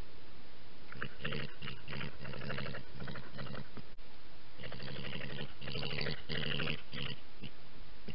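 European badgers calling with rapid, pulsed, growly calls in two bouts, one starting about a second in and another just past halfway, over a steady hiss.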